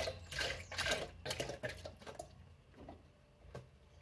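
Evaporated milk glugging out of a carton into a blender jar, a quick irregular run of gurgles and splashes for about two seconds that then thins to a few drips.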